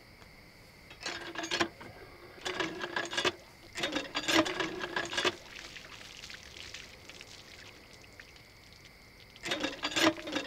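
A hand tube well being worked: bouts of metal knocking and creaking from the pump with water splashing, three in quick succession in the first half and another starting near the end. Crickets chirp steadily underneath.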